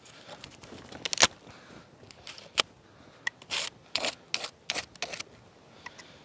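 A Mora knife cutting open plastic packaging: a string of irregular sharp clicks, snips and rustles, the loudest about a second in.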